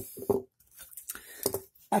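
A few faint, separate taps and knocks as two steel frame-lock folding knives are handled and set down on a mat.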